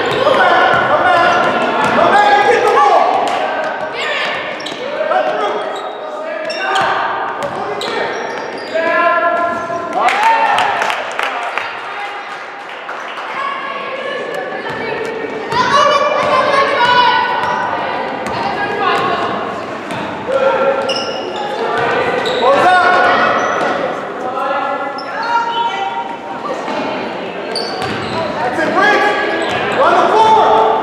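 Basketball dribbled and bouncing on a hardwood gym floor, mixed with shouted voices from players, coaches and spectators, all echoing in the gymnasium.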